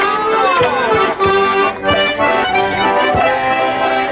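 A band of melodeons (diatonic button accordions) and a piano accordion playing a traditional Morris dance tune together, steady and loud.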